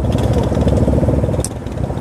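Yamaha Fazer 250's single-cylinder engine idling steadily.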